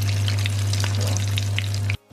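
Hot oil sizzling and crackling steadily around egg-and-tofu martabak parcels in spring-roll wrappers as they fry in a pan, over a constant low hum.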